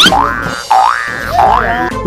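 Cartoon boing sound effect: a springy, wobbling tone that sweeps up at the start, then dips and rises again about three times, over background music.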